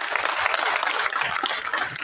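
A burst of applause: many people clapping, a dense steady patter of claps.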